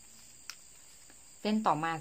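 A single faint click about half a second in, over a steady high-pitched background drone, then a woman's voice saying "next strand" in Thai near the end.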